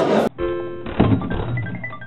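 Short musical logo sting: a held chord, then a thud about a second in, followed by a few short high notes that fade away.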